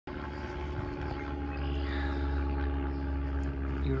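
A motor running steadily: a low drone with several steady tones above it that hold unchanged throughout.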